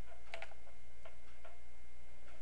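Several faint clicks from a computer pointing device, spaced irregularly in the first second, over a steady low electrical hum.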